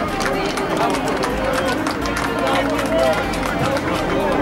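Several men's voices shouting and calling at once during football play, over scattered short sharp claps.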